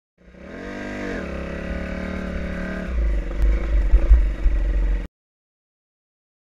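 Dirt bike engine with a dip and rise in pitch near the start, then running steadily. From about three seconds in it is joined by a loud low rumble and clattering, and the sound cuts off abruptly about a second before the end.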